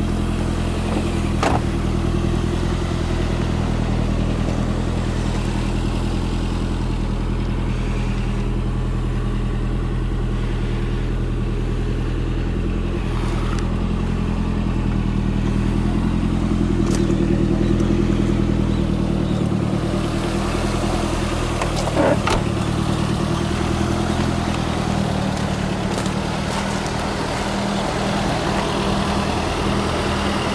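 Lancia Delta's engine idling steadily, with a few sharp clicks from the car being handled, the loudest about two-thirds of the way in.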